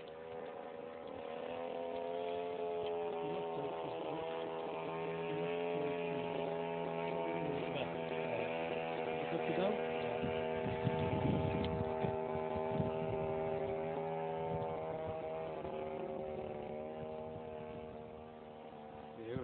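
Petrol engine of a large radio-controlled Extra aerobatic model plane running at a steady throttle in flight, growing louder over the first few seconds and fading near the end.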